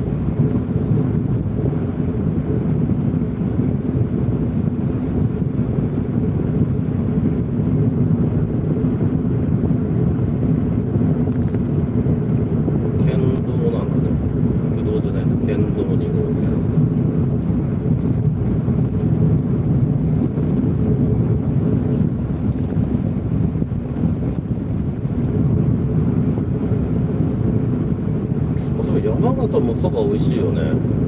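Car interior noise while driving: steady engine and road rumble, mostly low in pitch and even in level.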